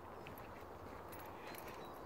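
Faint footsteps on a tarmac lane, a few soft scattered ticks over a low outdoor background rumble.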